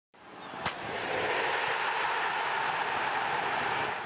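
Intro whoosh sound effect: a rising rush of noise with a sharp hit about two-thirds of a second in, held steady, then fading near the end.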